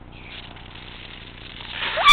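Faint steady hiss of outdoor background noise. Near the very end a loud voice begins to rise.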